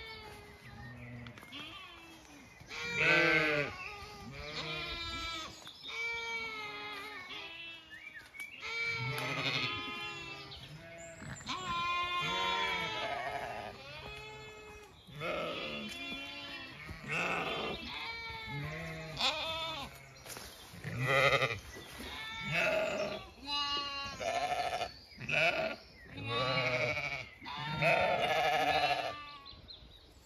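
A flock of Zwartbles ewes and lambs bleating, one call after another for the whole stretch, deeper and higher calls often overlapping.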